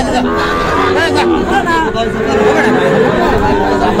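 Men chattering in a crowd, with cattle mooing among them.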